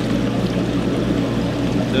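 Steady rush of running water in the amphibian holding tanks over a low, constant hum.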